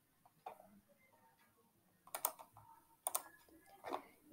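About four short, sharp clicks at a computer, spaced irregularly roughly a second apart, as the mouse and keys are worked.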